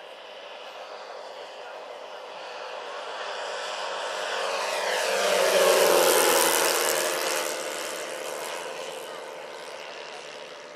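Large four-engined RC scale model DC-6B airliner making a low flyby. Its propeller and motor sound swells to its loudest about six seconds in, drops in pitch as it passes, then fades as it climbs away.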